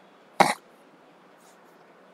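A man coughs once, sharply, about half a second in.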